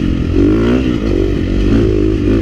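2016 KTM 350 XC-F's single-cylinder four-stroke engine running under throttle while the bike is ridden on a dirt trail, its revs rising and falling.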